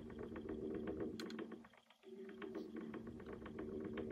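Faint handling noise: light clicks and taps of fingers against a plastic model car body, over a low steady hum, with a brief dip to near silence about two seconds in.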